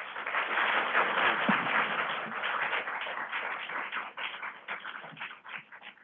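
Audience applauding: a round of clapping that is loudest in the first second or so, then slowly dies away into scattered single claps near the end.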